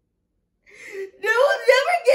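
A woman's voice making a wordless, drawn-out whimpering, mock-crying sound. It starts about a second in after a short silence and a sharp intake of breath.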